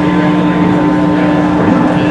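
A steady, unchanging hum from the stage amplification under the chatter of a crowd in a live music club, with no playing yet.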